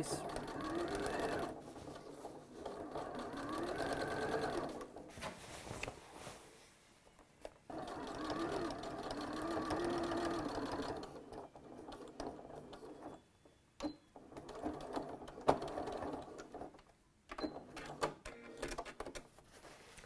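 Electric domestic sewing machine stitching a hem in cotton fabric. It runs in spurts, its motor whine rising and falling as the speed changes: two runs of several seconds each, then shorter bursts with pauses between them.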